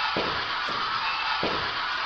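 Spirit box sweeping through radio frequencies: a steady hiss of static broken by faint clicks about every half second as it jumps from station to station.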